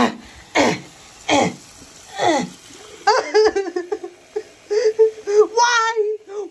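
A high-pitched voice laughing: four falling-pitch cries in the first couple of seconds, then rapid giggling from about halfway through.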